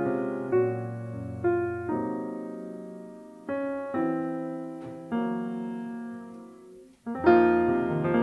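Steinway grand piano playing slow chords, each struck and left to ring and fade. Just before the end it stops briefly, then a fuller, busier passage begins.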